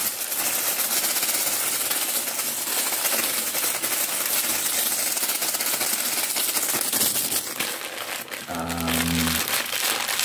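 Small clear plastic bags crinkled rapidly and without pause, held close to the microphone. Near the end, a brief low hum of a voice.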